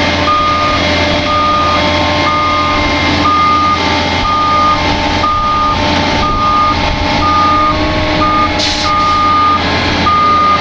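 Backup alarm on a Gradall XL4100 wheeled excavator beeping about once a second, with the machine's engine running steadily underneath. A short hiss comes near the end.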